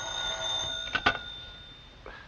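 Old electromechanical telephone bell ringing steadily, cut short by two clicks about a second in as the receiver is picked up, then fading away.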